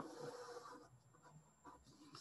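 Faint scratch of a pen drawing a curved arrow on paper, mostly in the first second, then near silence.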